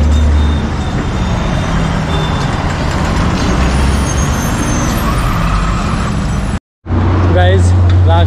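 Road traffic on a busy city road, with buses and cars driving close past: a steady, noisy rumble. It cuts off abruptly near the end.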